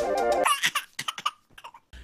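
Electronic intro music ends about half a second in, followed by a baby laughing in a few short bursts.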